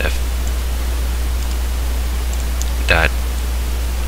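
Steady low electrical hum with even hiss from the recording microphone, broken by two brief spoken words: one at the very start and one about three seconds in.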